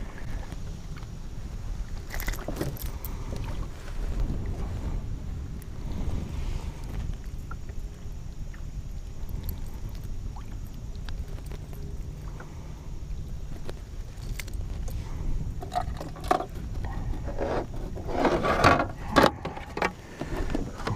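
A steady low rumble of wind and water around a kayak, with scattered light clicks and rattles of gear being handled, and a louder burst of clattering shortly before the end as a plastic fish-measuring board is pulled out.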